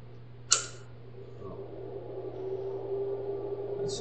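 A sharp click about half a second in, then a steady hum that grows louder: a Samsung NP270E5G laptop being switched on, its cooling fan starting up.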